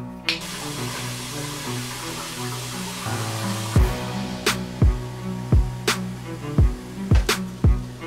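Ground venison sizzling in a frying pan, a steady hiss, under background music. A deep kick-drum beat comes in about halfway through.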